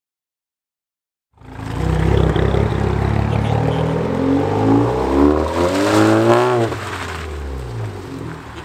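A SEAT Leon hatchback's engine starts sounding about a second and a half in. Its revs climb steadily for several seconds, then drop back sharply near the end and run on lower and quieter.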